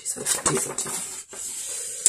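Sheets of paper and card being handled and shuffled, giving irregular rustling.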